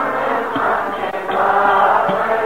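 A congregation singing a devotional kirtan refrain together in chorus, many voices at once, a little louder near the end.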